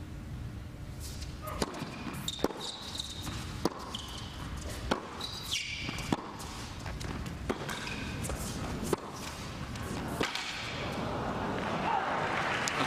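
Tennis rally on a hard court: racket strikes on the ball roughly every second and a half, with brief high squeaks from players' shoes on the court between shots.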